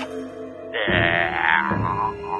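Cartoon background music with held low notes, then about a second in a short, loud, wordless cartoon voice sound over the music.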